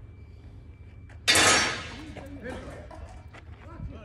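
A single sudden loud crash about a second in, dying away within about half a second, then faint distant voices.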